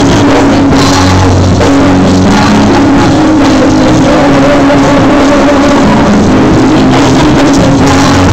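Live worship band playing an upbeat rock-style praise song, with electric bass and drum kit loud through the PA.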